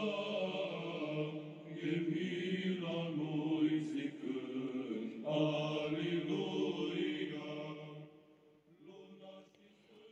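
Slow sung religious chant in long held notes, phrase after phrase, fading out about eight seconds in.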